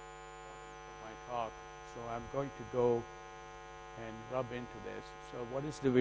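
Steady electrical hum from the lecture hall's microphone and sound system, broken a few times by short, faint bits of a man's speech.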